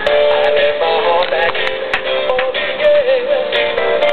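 Music with a sung melody playing from a radio broadcast, the song or jingle that follows the station's show sign-off.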